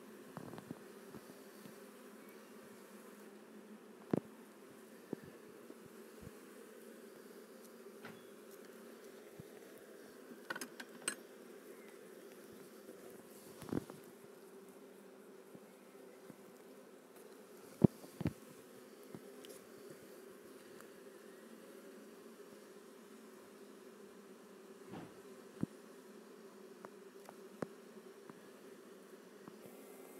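Honeybees humming steadily around an open hive, with scattered sharp knocks and clicks from wooden hive frames and boxes being handled; the loudest knock comes a little past the middle.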